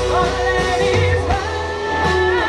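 Live rock band playing through a PA: guitars, bass and drums, with a woman singing.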